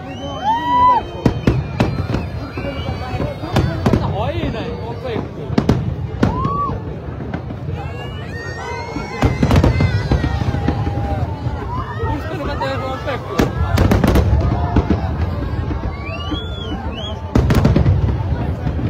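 Aerial fireworks display: a continuous run of sharp bangs from bursting shells, with heavier deep booms about nine seconds in, around fourteen seconds and again at the end. Crowd voices and shouts run underneath.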